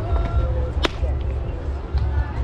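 One sharp smack of a pitched softball arriving at home plate, a little under a second in.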